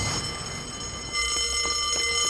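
An alarm ringing steadily with several held tones, over a low rumble. A further tone joins about a second in.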